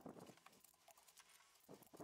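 Near silence, broken by a few faint knocks and clicks: one near the start, a couple soon after, and a pair near the end.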